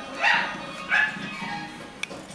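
Two short dog barks from a film soundtrack, coming over TV and laptop speakers with film music underneath.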